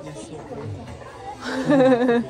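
Speech: a man talking over the chatter of other people, his voice loudest near the end.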